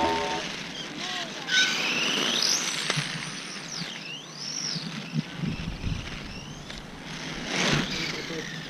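RC drift car's motor whine rising and falling in pitch as the car speeds up and slows while driving around, over the hiss of its tyres on asphalt. It gets louder near the end as the car comes close.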